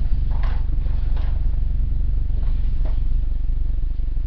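Steady low electrical-sounding hum, with a few faint clatters and rustles of items being handled while someone rummages below the desk.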